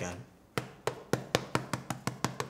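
Powder puff patted repeatedly against the face, pressing loose setting powder onto the skin: a quick, even run of taps, about four a second, starting about half a second in.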